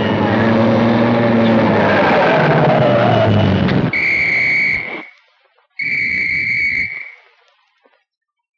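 Brass-heavy orchestral cartoon score, breaking off about four seconds in. Two blasts of a high, steady whistle-like tone follow, each about a second long, with low noise beneath.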